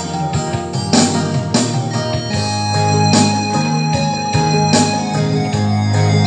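Electronic keyboard playing an instrumental passage of a Minang song: held chords and bass notes over a steady beat.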